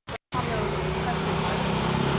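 Steady street traffic noise with a low, even engine hum from a car close by. The sound cuts out completely for a moment at the very start.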